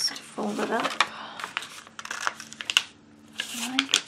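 Sheets of printer paper being handled, smoothed and folded by hand: dry rustling with many short crisp crackles and taps. A brief murmured vocal sound comes about half a second in.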